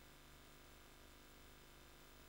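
Near silence: a faint steady hiss with a low hum, the playback noise floor, which switches on abruptly at the start.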